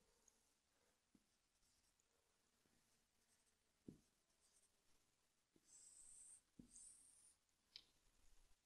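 Faint strokes of a marker pen on a whiteboard, with two longer strokes about six and seven seconds in and a few soft knocks of the pen against the board.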